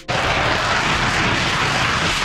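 Saab JAS 39 Gripen fighter jet's engine, a loud steady jet roar that starts suddenly just after the beginning.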